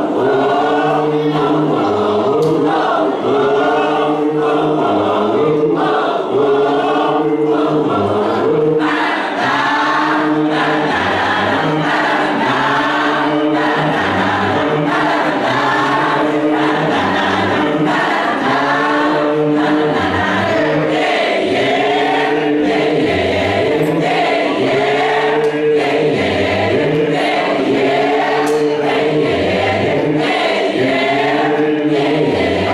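A youth gospel choir of young men and women singing together in harmony, loud and unbroken.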